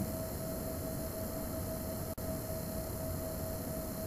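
Steady background hiss with a faint steady hum, cutting out for an instant about two seconds in.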